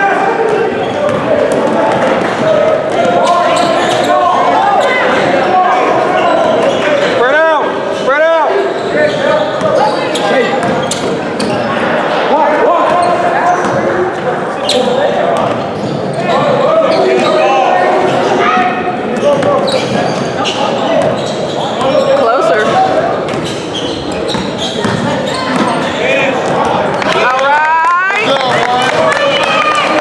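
Basketball bouncing on a hardwood gym floor during play, amid spectators' talk and shouts that echo around a large hall.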